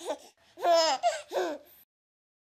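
A baby giggling in three or four short, high-pitched bursts, falling silent just before the end.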